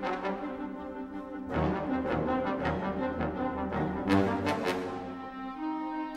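Wind ensemble playing, with brass to the fore: sustained chords, the low brass coming in about a second and a half in, and sharp accented hits around four seconds in.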